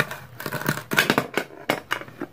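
Plastic toy knife cutting through a velcro-joined plastic toy pepper. The velcro seam pulls apart in a run of short, crackling rips.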